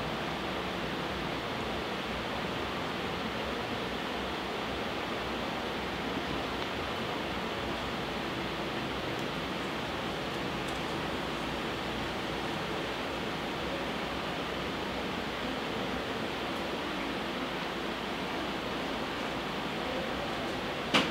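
Steady, even hiss at a constant level with no distinct events: a background noise bed with no other sound over it.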